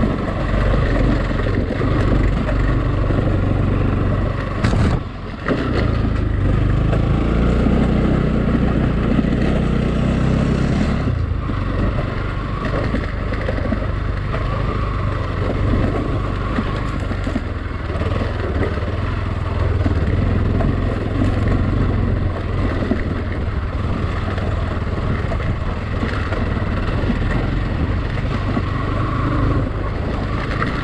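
Motorcycle engine running as the bike is ridden over a rough dirt road. The engine note drops briefly about five seconds in, then pulls harder for a few seconds before settling back to a steady run.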